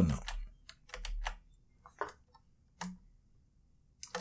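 Computer keyboard keystrokes and clicks in short scattered groups, with quiet gaps between them.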